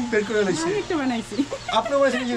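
Deshi chickens clucking, mixed with a man's voice.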